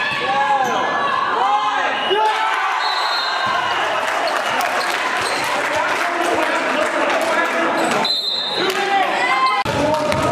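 Live gym sound of a basketball game: sneakers squeaking on the court floor, with short arching squeals near the start and again near the end, the ball bouncing, and voices echoing in the hall.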